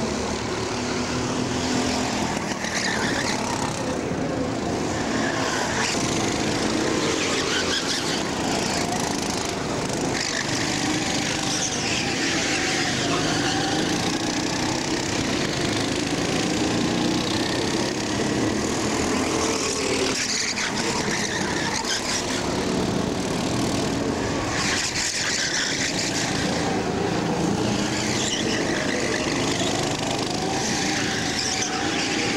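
Several racing karts' small engines running on track, their pitch rising and falling continuously as they accelerate, lift for corners and pass by.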